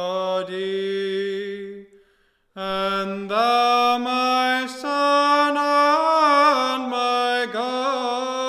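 A single voice chanting an Orthodox hymn in Byzantine style, holding long notes and gliding between them in melismatic phrases. There is a short breath pause about two seconds in.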